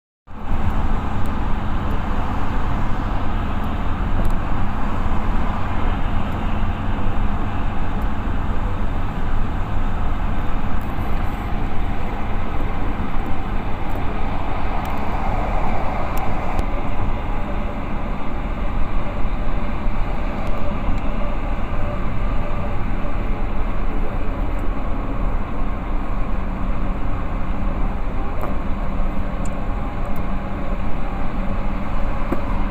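Steady rumble of a moving vehicle, engine hum and road noise as heard from inside, starting abruptly at the beginning and running on evenly.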